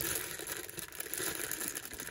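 Clear plastic zip-top bag crinkling as it is squeezed and turned in the hands, with the small Lego pieces inside shifting and rattling.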